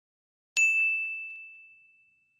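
A single bright electronic ding, the chime of an animated subscribe-button click, struck about half a second in and fading away over about a second and a half.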